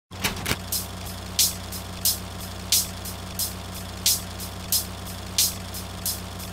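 A steady low electrical hum with a hissing crackle that comes back about every two-thirds of a second: a retro film-style hum-and-crackle intro effect.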